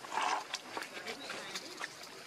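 A baby macaque gives a short, loud squeal as an adult macaque grabs hold of it. Light scattered clicks and rustles of leaves and dirt follow.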